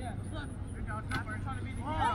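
Distant players' voices calling out across the field over a steady low rumble, with one sharp knock about a second in.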